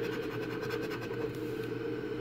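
A coin scraping the scratch-off coating of a paper lottery ticket in quick, even back-and-forth strokes, uncovering the winning numbers.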